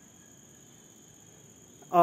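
Faint, steady, high-pitched ringing made of several thin tones over a low hiss, with a voice starting right at the very end.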